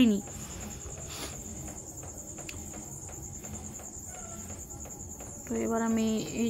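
Crickets chirping in a steady high-pitched trill over low outdoor background, with a faint splash about a second in as a handful of rock salt lands in the fish pond. Speech comes back near the end.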